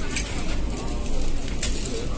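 Busy restaurant ambience: a steady murmur of background voices, with two short clinks of tableware, one shortly after the start and one near the end.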